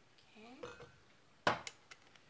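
A short rising vocal sound, then a sharp knock followed by a lighter tap about one and a half seconds in, as the kefir bottle and shaker cup are set down on a tabletop.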